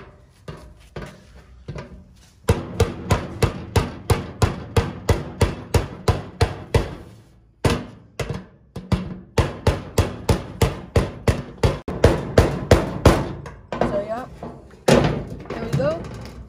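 Rubber mallet striking the end of a long steel bar set against the lock ring of a fuel pump sending unit on a steel fuel tank, driving the ring round to lock the new pump in. Rapid, even strikes, about three a second, in two long runs with a short pause a little past halfway.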